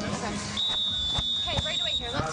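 A single steady high-pitched tone, about a second and a half long, starting about half a second in, over scattered voices.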